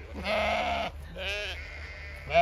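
Zwartbles sheep bleating twice: a longer, rough call just after the start, then a shorter, wavering one.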